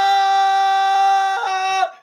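A man's voice holding one long sung note, steady in pitch, that steps up slightly about one and a half seconds in and cuts off just before the end.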